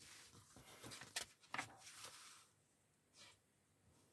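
Faint rustling of paper as magazine pages are turned, with a few sharp crinkles a little over a second in and a brief soft rustle near the end.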